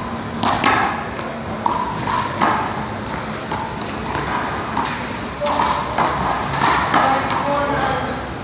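Sharp smacks of a small rubber ball struck by hand and hitting a concrete one-wall court during a rally, several strikes a second or more apart, with voices chattering in the background.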